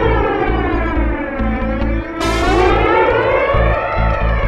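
Live electronic music from a modular synthesizer and an electric guitar through effects: pitched, siren-like sweeps that slide downward, a new sweep starting about halfway through, over a steady low electronic kick-drum pulse.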